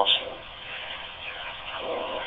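Kenwood TK-3701D walkie-talkie speaker giving a steady, narrow-band hiss between words of a received dPMR digital transmission. A clipped word from the radio ends just at the start.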